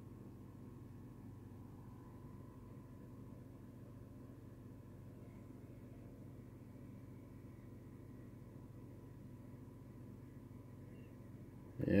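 Quiet room tone: a faint, steady low hum with no distinct event.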